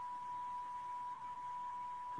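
A steady single tone, like a faint whistle, held at one pitch over a low hiss on a video call's audio: background noise on the line that the call's participants can hear.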